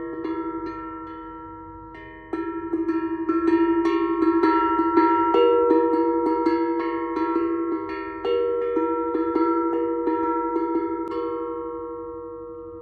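Handpan struck with rubber-tipped mallets: quick repeated strokes over ringing, overlapping metallic notes on a few steady pitches. It grows louder about two seconds in and fades near the end.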